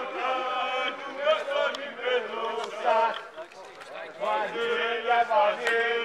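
Football supporters' male voices chanting and shouting, with long held notes from several voices overlapping.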